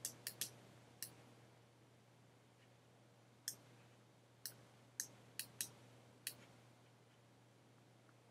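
Computer mouse buttons clicking: about ten short, sharp clicks at uneven intervals, a few close together at first, a gap of a couple of seconds, then another cluster and nothing in the last second and a half. A faint steady low hum runs underneath.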